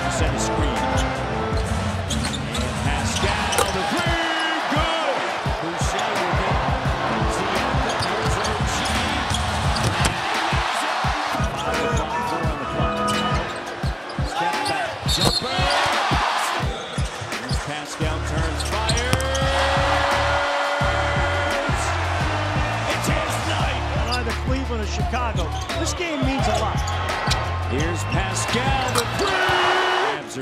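Basketball game sound in an arena: a basketball bouncing on the hardwood court repeatedly, amid crowd noise.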